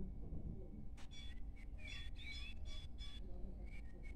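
Volvo B10BLE city bus's diesel engine idling with a steady low rumble, heard inside the cabin. Birds chirp from about a second in until just past three seconds, with a few light clicks.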